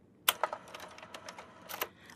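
A run of light clicks and taps: a sharper click just after the start, fainter ones through the middle, and a couple more near the end.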